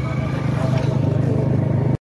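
A 125 cc motorcycle engine running steadily while riding, a low pulsing rumble that cuts off suddenly at the very end.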